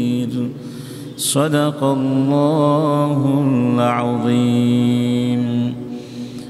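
A man reciting Quran verses in Arabic as a melodic chant. After a short breath about a second in, he holds a long phrase of sustained notes with wavering ornaments.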